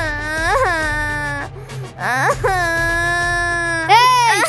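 A child wailing loudly in two long, drawn-out cries: the first rises and falls, and the second is held on one steady pitch near the end.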